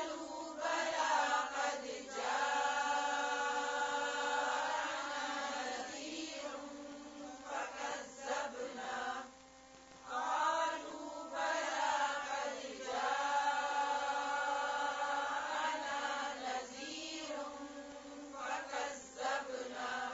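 A woman reciting the Quran slowly and melodically with tajweed, drawing out the vowels in long held notes, in two phrases of several seconds each.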